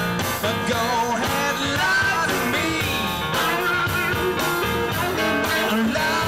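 Blues-rock band playing live: electric guitar, bass guitar, keyboard and drums, with a male singer's lead vocal over them.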